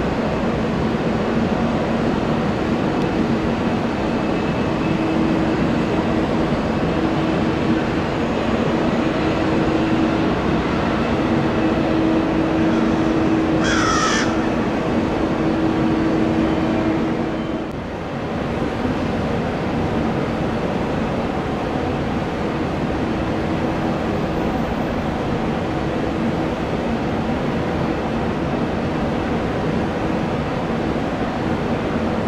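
Steady airport background of distant jet engines with a low hum, dipping briefly a little past halfway. A single short bird call about halfway through.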